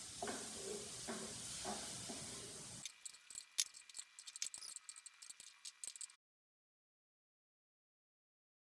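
Tomato and egg sizzling in a pan while a wooden spatula stirs. About three seconds in, the sizzle gives way to a run of light clicks and scrapes of the spatula against the pan, and the sound cuts off suddenly a little after six seconds.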